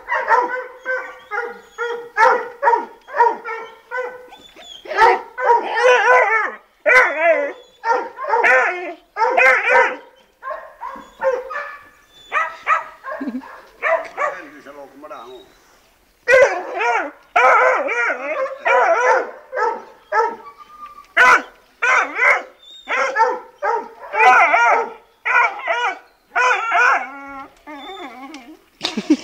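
A young puppy yapping high-pitched barks over and over, about two a second, at a rabbit, with a quieter, sparser spell near the middle.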